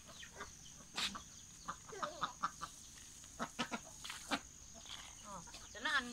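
Domestic chickens clucking in short, scattered calls, with a few sharp clicks among them.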